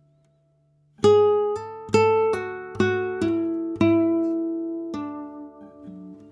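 Flamenco guitar in Rondeña tuning (drop D, A, D, F-sharp, B, E) playing a slow single-note line. After about a second of silence, eight or so picked notes ring one after another, about half a second apart, joined by hammered and slurred notes.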